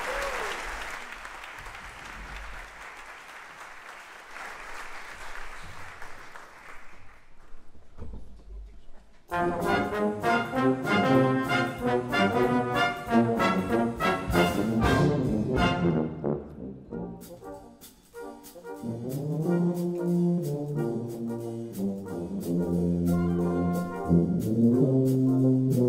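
Applause dies away over the first several seconds. After a short pause, a brass band starts playing loud, short repeated chords about nine seconds in. After a brief break, low tuba notes come in strongly near the end.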